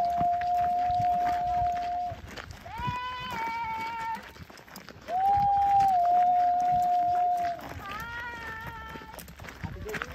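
A high voice calling out in long, held notes: two drawn-out calls a few seconds apart, each followed by a shorter call with a slightly falling pitch.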